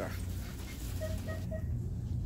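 Steady low hum of store background noise, with three faint short tones about a second in.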